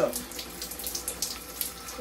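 Running water splashing steadily into and over the open neck of an empty plastic lotion bottle as it is filled to rinse it out.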